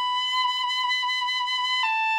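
The smaller of two wind instruments playing one long high note, then stepping down slightly just before the end. It is the smaller instrument of the pair, which is why it sounds higher than the larger one.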